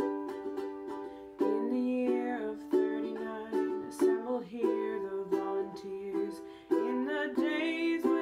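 Ukulele playing chords in a small room, each strum ringing out between attacks spaced about a second apart.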